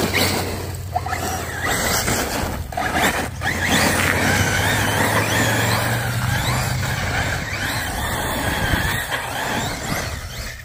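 Arrma Typhon TLR Tuned 1/8-scale electric RC buggy with a Max6 brushless motor, driven hard on loose dirt. The motor's high whine rises and falls with the throttle over the rush of tyres scrabbling on the dirt.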